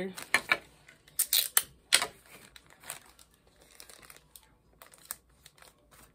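Cellophane wrapper crinkling and crackling as it is handled and folded back, with a few loud crackles in the first two seconds and softer scattered crinkles after.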